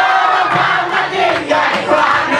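A boy singing loudly into a microphone while a group of classmates shouts and sings along, with some clapping.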